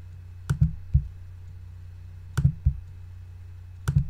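Computer mouse buttons clicking: three quick press-and-release pairs spread across a few seconds, over a steady low electrical hum.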